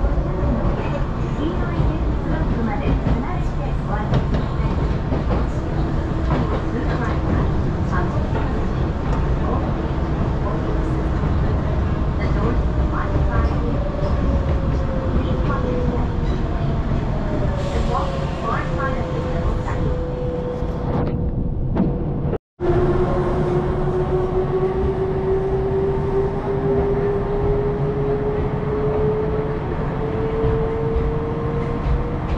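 Hakone Tozan Railway electric train running, a steady rumble from inside the carriage with a drawn-out tone that sinks slowly in pitch. The sound drops out for an instant about two-thirds through, after which the tone climbs slowly.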